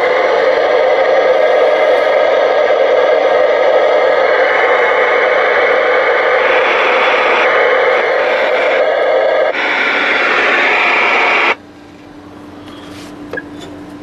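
Loud, steady static hiss from a CB radio's speaker, its tone shifting a few times. It cuts off suddenly about two-thirds of the way through, leaving only a faint steady hum.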